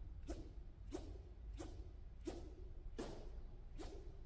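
Badminton racket swishing through the air in short backhand overhead wrist flicks, with no shuttle struck: about six evenly spaced swishes, roughly one every two-thirds of a second.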